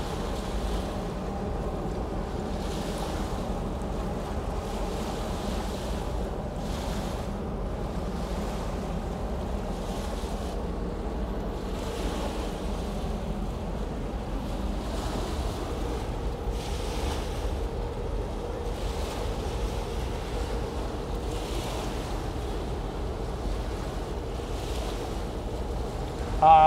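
Small waves washing onto the river beach every couple of seconds, over a steady low drone with faint steady tones from the large cruise ship passing close by. Wind rumbles on the microphone.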